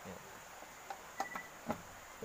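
A few light clicks and taps in the second half as a plastic plug is fitted and pushed into a wall outlet, over a faint steady high-pitched whine.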